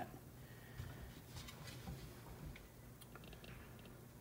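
Faint sizzle of pancake batter cooking in a hot nonstick skillet, with a few small scattered crackles over a low hum.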